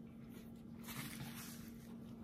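Quiet room with a steady low hum, and a faint soft rustle about a second in.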